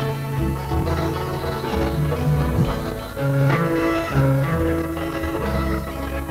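Instrumental background music, with plucked strings over a bass line whose notes change every half second or so.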